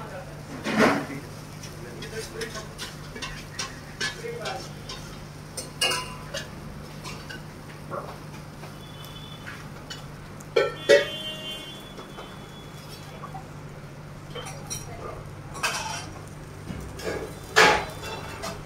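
Metal kitchen utensils clanking and scraping against steel pots and a flat dosa griddle, with a handful of sharp knocks standing out, over a steady low hum.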